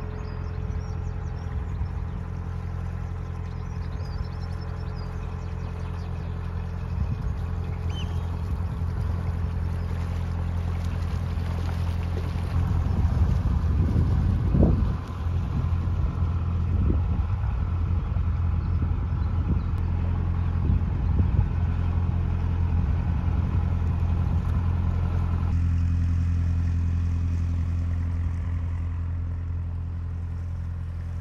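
Narrowboat's diesel engine running steadily at cruising speed, a constant low hum with several even tones. For several seconds in the middle it is overlaid by a louder, uneven rumble.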